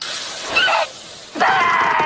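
A short, noisy, crash-like burst, then a brief high cry and, about a second and a half in, a loud, long, high-pitched scream from an animated character's voice.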